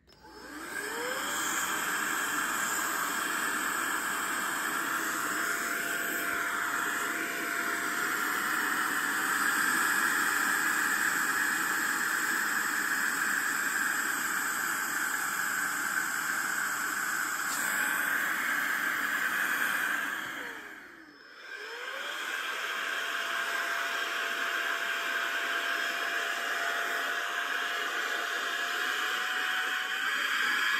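Roedix R7 cordless air duster's small fan motor running as an inflator, blowing air through its tip into an inflatable's valve: a steady whine over rushing air. It spins up at the start, winds down and stops about two-thirds through, then spins back up a second later and runs steadily again.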